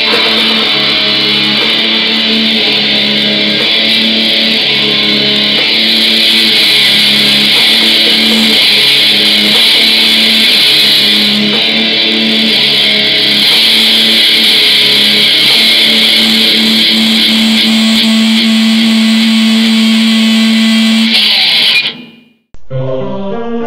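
Black metal music with heavily distorted electric guitars over a long held low note. It cuts off abruptly at the end.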